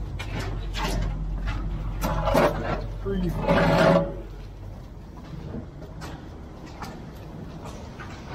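Men's voices calling out over a low, steady engine hum, loudest between about two and four seconds in, with scattered knocks and scrapes. The hum and voices fall away about halfway through.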